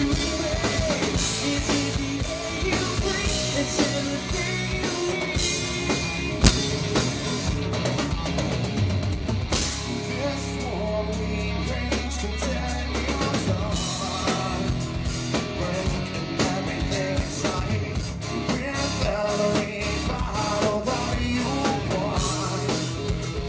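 Rock band playing live and amplified: drum kit and electric guitar, with a male vocalist singing into the microphone.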